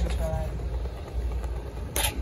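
Wind rumbling on a phone microphone outdoors, with a short voice just after the start and a sharp click at the very end.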